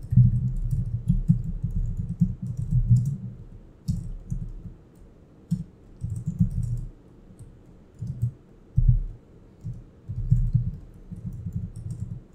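Typing on a computer keyboard in quick bursts of keystrokes with short pauses between them.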